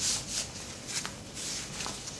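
Soft fabric rustling and rubbing as an absorbent insert is worked into the pocket of a cloth diaper, with a light click about a second in.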